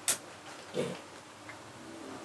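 A single sharp click of a switch as a fill light is turned on.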